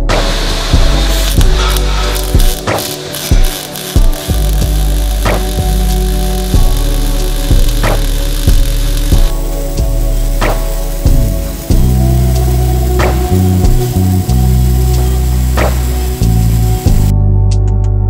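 Background music with a steady beat, over the continuous hiss and crackle of a MIG/MAG welding arc laying a 150-amp root pass on steel pipe; the arc noise cuts off suddenly near the end.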